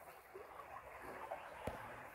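Faint, steady rush of creek water flowing through a four-foot corrugated metal culvert, with one light click near the end.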